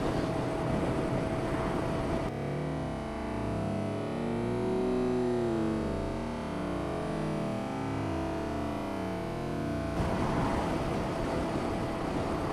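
Motorcycle riding noise on a helmet camera's microphone: engine and wind rushing steadily, with a thin steady whine. From about two seconds in until about ten seconds the noise turns smoother and warbling, as if heavily processed, before the rough wind noise returns.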